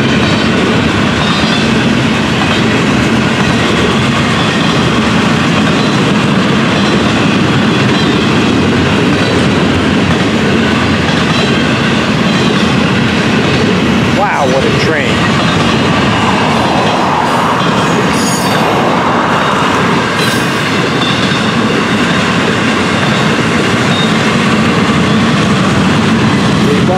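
Florida East Coast Railway freight train's double-stack intermodal well cars rolling past close by: a steady, loud rumble of steel wheels on rail with clickety-clack from the rail joints.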